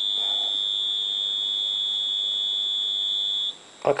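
Churchill distributor timing fixture's test buzzer sounding one steady high-pitched tone, which cuts off about three and a half seconds in. The buzzer signals the contact breaker points changing state as the Lucas distributor cam is turned against the degree scale.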